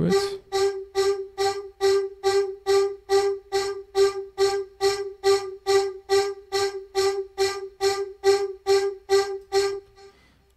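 A distorted, formant-shifted vocal-style synth patch with chorus playing one repeated note, about three short notes a second, that stops shortly before the end.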